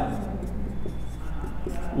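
A marker pen writing on a whiteboard: faint, irregular scratching strokes of the felt tip on the board, over a low steady hum.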